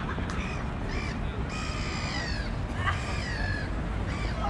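A large bird calling with harsh, caw-like calls: a few short ones, then two longer ones in the middle, each falling a little in pitch, over a steady low background rumble.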